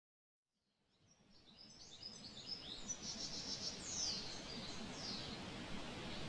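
Birds chirping, with short high calls and falling whistles, over a steady low ambient rumble, fading in from silence.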